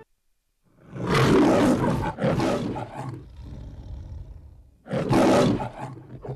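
An animal-like roar heard twice: a long loud roar starting about a second in and trailing off, then a second shorter roar near the end.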